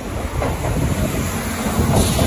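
Kintetsu 30000 series Vista Car electric train pulling into the platform and passing close by, its running noise growing louder as the cars go past, with a few wheel clacks.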